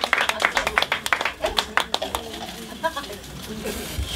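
A small club audience clapping, the claps thinning out and dying away about two to three seconds in, with voices underneath.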